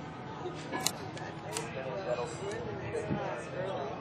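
Indistinct voices talking in the background, with a few sharp clicks about a second, a second and a half, and two and a half seconds in.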